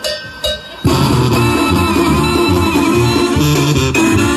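A Mexican brass banda strikes up a song about a second in, with a line of horns, a tuba and drums all playing loudly together.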